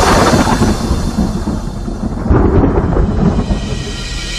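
Thunder rumbling in two heavy rolls: one breaks at the start and a second swells just past two seconds, over the film's music.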